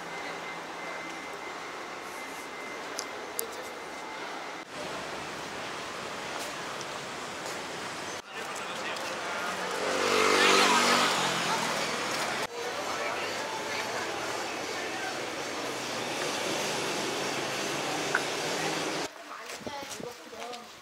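City street noise from road traffic, broken by abrupt cuts. About ten seconds in, a vehicle passes close by, its engine note rising and then falling away.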